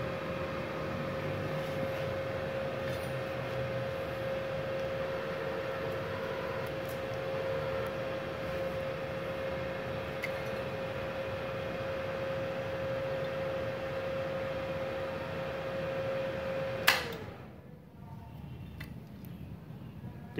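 Multipro MIG-MMA/TIG 160 A-SC inverter welder running with a steady fan hum and a high whine. Near the end a sharp click cuts it off and the hum dies away: the 4-amp breaker on the 900-watt supply trips under the welder's load.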